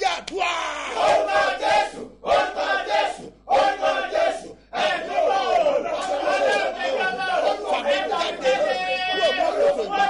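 A man praying aloud in loud, impassioned, shouted phrases, breaking off for brief pauses about two, three and a half and four and a half seconds in.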